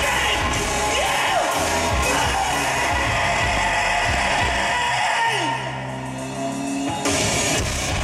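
A live industrial/EBM band playing loud music through a club PA. About five seconds in the dense mix drops out to a falling glide and a held low synth tone, and the full band comes back in suddenly about a second and a half later.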